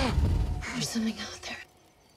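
A deep low rumble dies away, then short breathy whispered voice sounds come in fragments. The sound cuts off suddenly to silence about a second and a half in.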